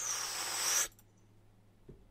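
A rushing, hiss-like noise that swells and cuts off suddenly just under a second in, then near silence with a faint low hum.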